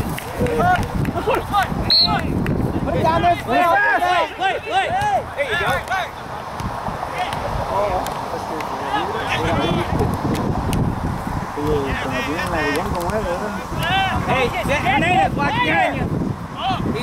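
Players shouting short calls to one another across a soccer field during play, several voices overlapping throughout.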